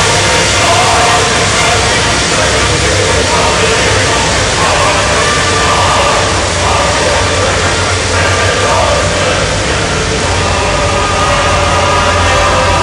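Armoured military vehicles' engines running as they drive past in a column, with a steady low hum under the murmur of a large crowd of spectators.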